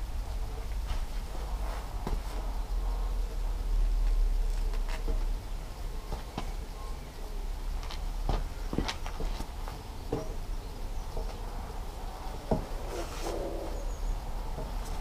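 Scattered knocks, taps and scrapes as a car tyre with chicken-wire mesh inside is pushed and pulled along its poles, over a steady low wind rumble.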